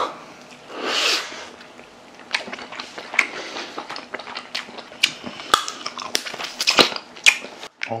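People eating steamed snow crab leg meat: chewing and mouth sounds, a breathy sound about a second in, then a string of short, sharp clicks and smacks.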